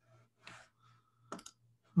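A quick run of three or four faint clicks about a second and a half in, over a low steady hum.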